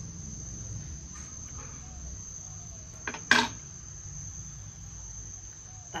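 Insects chirring in one steady high-pitched tone, with a single sharp knock or click a little past halfway, the loudest sound.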